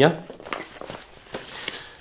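Faint rustling and a few soft taps as a thick book is handled and opened.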